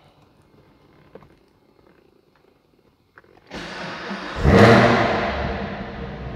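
A 2019 Chevrolet Camaro ZL1's supercharged 6.2-litre V8 starting, heard inside the cabin: after a few faint clicks, the starter engages about three and a half seconds in and the engine starts right up within a second. It flares up loudly, then drops back to a steady idle.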